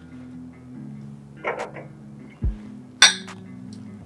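Stemmed wine glasses clinking once in a toast, a sharp ring about three seconds in, over soft background music.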